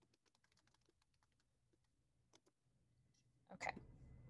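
Faint typing on a computer keyboard: a quick run of soft key clicks as a line of text is entered, dying away after about two and a half seconds.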